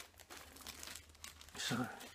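Faint crinkling of tobacco packets being handled: a run of small crackles for the first second and a half, then a man says "So" near the end.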